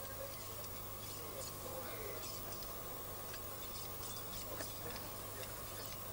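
Low steady background hum with a few faint, light clicks of steel sheep-shear blades being handled and set by hand.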